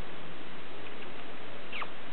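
Steady rain falling, an even hiss and patter. Near the end, one brief high squeak that falls in pitch.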